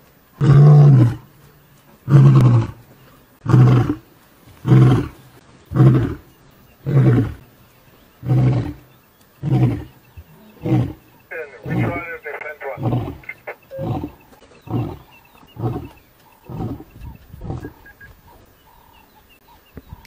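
A lion roaring: a full bout of deep calls, more than a dozen in a row about one a second. The early calls are long and loud, and they taper into shorter, fainter grunts toward the end.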